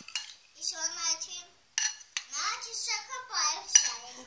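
Spoon clinking and scraping against a bowl of flour, with one sharp clink near the end, while a child's voice sounds without clear words.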